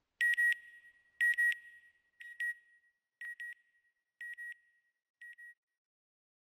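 Electronic beep sound effect: six short double beeps at one high pitch, about one a second, growing fainter each time until they die away.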